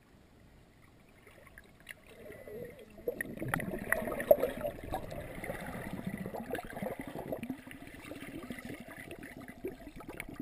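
Muffled underwater sloshing and bubbling from a swimmer's strokes and kicks, heard with the microphone under water. It starts faint and builds to a steady churn about three seconds in, with scattered small knocks and one sharper knock a little after four seconds.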